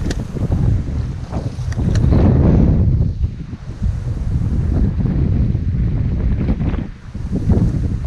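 Wind buffeting the microphone: a loud low rumble that swells and fades in gusts, with a few light clicks.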